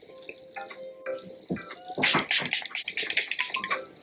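A finger-pump facial mist bottle (Rare Beauty Always an Optimist 4-in-1 Mist) spritzed several times in quick succession, short hissy sprays starting about halfway through. Soft background music with plucked notes plays throughout.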